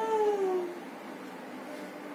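A single drawn-out cry, under a second long at the start, rising slightly and then falling in pitch, over a steady low background hiss.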